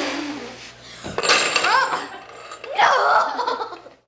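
A boy blowing at a stack of metal nails balanced on a stand. About a second in, the nails fall and clatter onto the table with a high metallic ring, and children's laughter follows.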